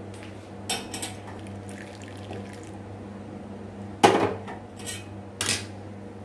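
A steel spoon clinking and knocking against a ceramic bowl while mixing powder with milk: a few light clicks, then two sharp knocks about a second and a half apart in the second half, the first the loudest, over a low steady hum.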